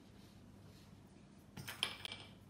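A brief clink and rattle of small metal and plastic modelling tools knocking together as one is picked up from the table, near the end. Before it, only quiet room tone with a faint low hum.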